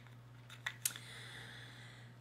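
A few faint, short clicks about half a second to a second in, over quiet room tone.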